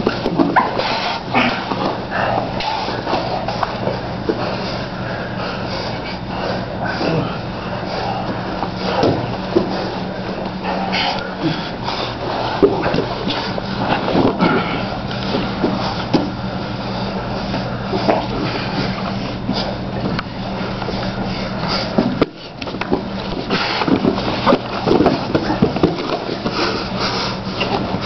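Two men grappling on foam mats: irregular scuffs and thuds of bodies shifting and hitting the mat, with heavy breathing and grunts, over a steady low hum.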